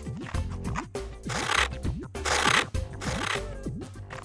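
Scissors cutting through thin card: three rasping cuts in a row through the middle, each about half a second long. Light background music with a repeating sliding bass line plays throughout.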